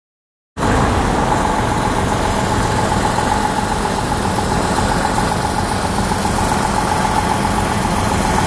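Motor vehicle engine idling: a steady low rumble with a steady whine above it. It starts abruptly about half a second in, out of silence.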